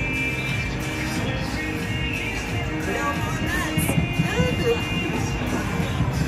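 Background music over the murmur of voices and scattered electronic clicks of a busy casino floor.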